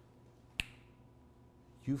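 A single sharp click about half a second in, then a man's voice starting to speak near the end.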